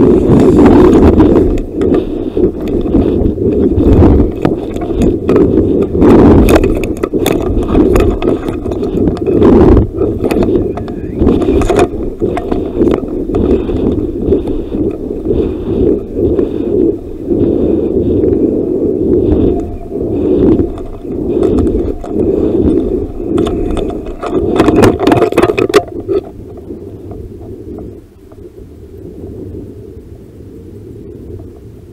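Wind rushing and buffeting over a model rocket's onboard camera microphone as the rocket swings down under its parachute, with scattered clicks and rattles from the airframe. The wind noise surges and eases irregularly and drops off about 26 seconds in.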